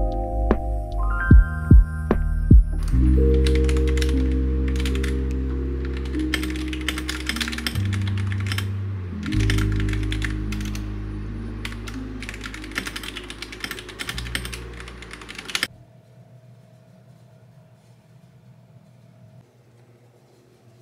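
Fast typing on an RK71 mechanical keyboard with linear red switches, a steady run of key clacks starting about three seconds in, over soft background music with long held notes that slowly fade. Both stop abruptly near the end, leaving only faint room tone.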